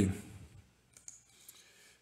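A few faint clicks from working a computer, about a second in and again about half a second later.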